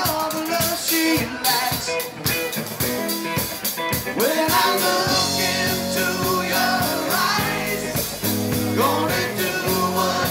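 Live rock band music: electric guitar and drum kit, with singing. The drum beat thins out about halfway through, and held low guitar notes carry the rest.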